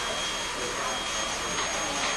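Steady whirring noise of a blower motor with a thin, high-pitched whine held on one note.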